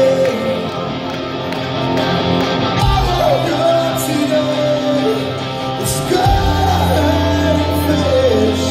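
Live rock band playing a song with a sung vocal line over electric guitars, bass and drums, with cymbal hits. It is heard from within the crowd in a large hall.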